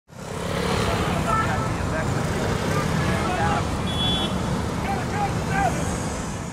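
City street ambience: road traffic running steadily, with voices of passers-by mixed in and a brief high tone about four seconds in.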